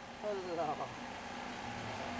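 A faint voice speaks briefly in the first second, over a steady low hum that continues after it.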